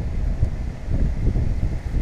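Wind buffeting the microphone of a helmet-mounted camera, an uneven low rumble.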